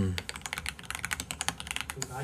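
Fast typing on a computer keyboard: a quick, dense run of keystroke clicks, entering a search.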